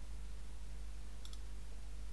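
A quick pair of computer mouse clicks about a second and a quarter in, over a steady low hum and hiss.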